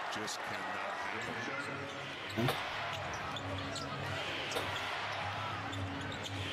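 Basketball broadcast sound from an arena: a steady crowd din with a basketball bouncing on the hardwood court now and then.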